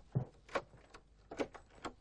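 A wooden door being unlocked and opened: four sharp clicks and knocks from its lock and handle, spaced irregularly.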